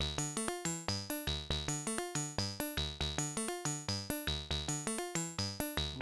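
Modular synthesizer playing a step-sequenced pattern of short, snappy notes at changing pitches, about six a second, each opening sharply and dying away quickly. The notes come from Oakley Journeyman filters swept by an Oakley voltage-controlled ADSR envelope generator in fast mode.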